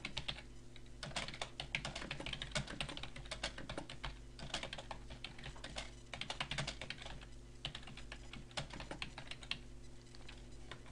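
Typing on a computer keyboard: quick runs of key clicks with brief pauses between them.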